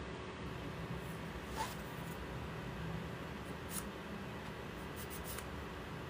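Steady low room noise with a few faint, light clicks, a little over a second in, near the middle and near the end, as small objects are handled in the fingers.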